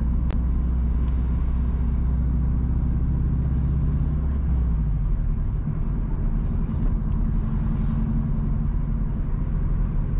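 Car engine and road noise heard from inside the cabin while driving: a steady low hum whose note shifts about halfway through, with one brief click near the start.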